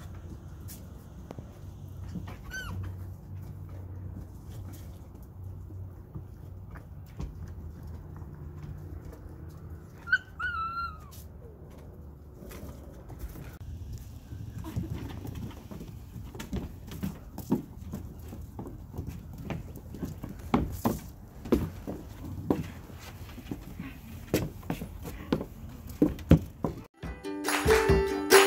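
Husky mix puppies: one gives a brief high whimper a couple of seconds in and a longer, falling whine about ten seconds in, over a steady low rumble. From about halfway on come many light taps and knocks.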